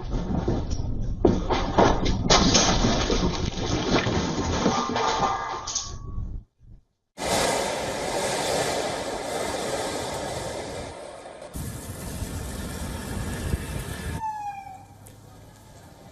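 A room shaking in an earthquake, heard through a security camera's microphone: a low rumble crowded with knocks and rattles of furniture and objects, cutting off about six seconds in. A second stretch of steady outdoor noise follows, with a short falling tone near the end.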